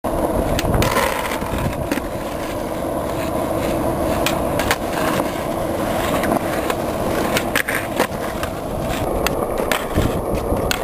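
Skateboard wheels rolling on asphalt: a steady rumble with occasional sharp clicks and knocks.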